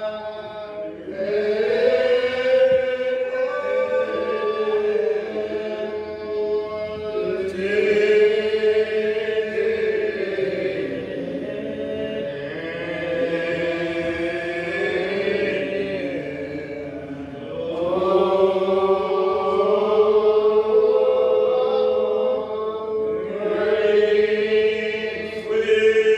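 A slow, unaccompanied hymn sung by a group of voices, each syllable drawn out into long held notes that slide slowly between pitches, in phrases of several seconds.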